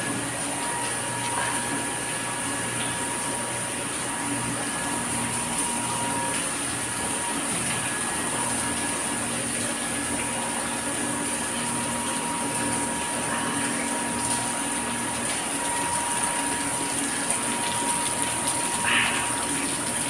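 Reverse-osmosis plant running: a steady machine hum from its pumps over a constant hiss of water flowing through the pipework.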